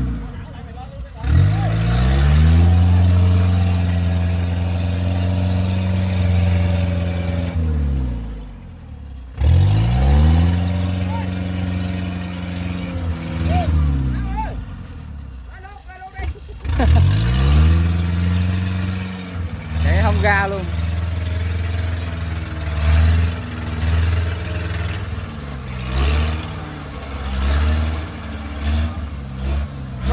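Engine of a small tracked rice carrier driving through deep mud under a load of rice sacks, revving up and holding high revs for several seconds, then dropping back; this happens three times, and the revs waver up and down in the last part.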